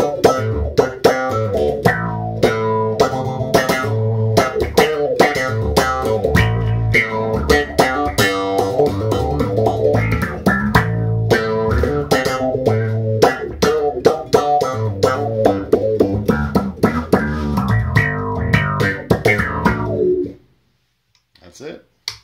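Electric bass guitar played through a Mu-Tron III envelope filter in low-pass mode, low range, with the drive down: each plucked note is swept by the filter into a backwards-envelope, underwater-like sound. The busy line of notes stops about twenty seconds in.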